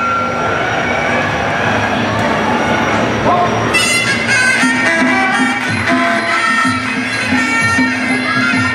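Live Thai boxing ring music (sarama) starting about four seconds in: a Thai oboe plays held, reedy notes over a steady drum beat. Before it, the arena's crowd murmur.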